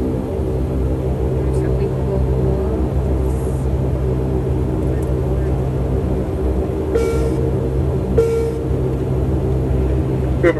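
Steady low rumble and engine hum inside the cabin of an airliner rolling out on the runway just after touchdown. Two brief higher sounds about seven and eight seconds in.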